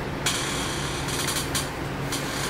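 A click and then a short scraping rustle as mineral specimens are handled on a table, over a steady low hum.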